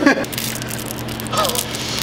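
Coarse 40-grit sandpaper being wrapped and rubbed onto a barbell: a steady rough rustle with a few sharp clicks, which someone calls a "death sound".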